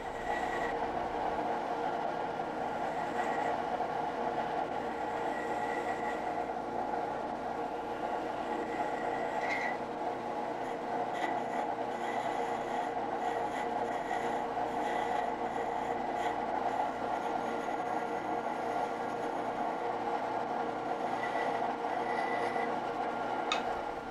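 Wood lathe running with a steady motor hum while a small spindle gouge takes light cuts on a tiny gaboon ebony spindle, a soft, continuous scraping as a bead is shaped on its end.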